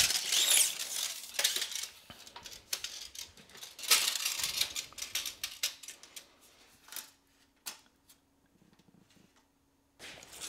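Steel tape measure being extended and held against a wall, its blade rattling and scraping with small clicks. The handling noise thins to a few clicks after about six seconds.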